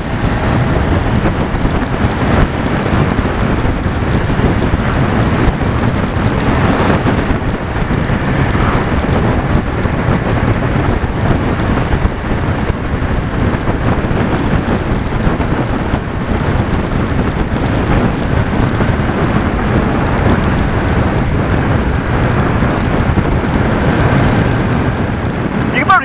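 Steady wind rush over the microphone of a Suzuki SV650 motorcycle riding at road speed, with its V-twin engine running underneath.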